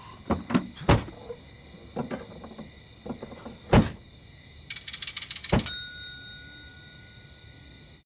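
Thumps and knocks at an open car trunk, then a quick rattling run of clicks that ends in a hard thud, like the trunk lid slamming shut. A ringing tone follows and fades away.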